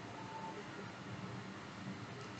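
Faint steady hiss of the recording's background noise (room tone), with a faint brief high tone early on.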